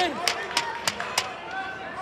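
A few sharp hand claps, roughly three a second, mixed with shouting voices.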